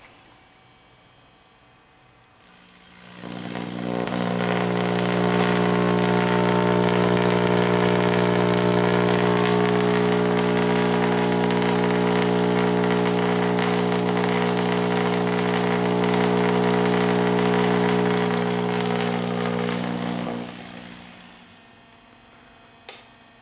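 Vacuum tube Tesla coil with two 811A tubes, fed from a microwave oven transformer, running and throwing an arc: a loud, steady mains-pitched buzz with a hiss over it. It swells up about three seconds in and dies away a couple of seconds before the end.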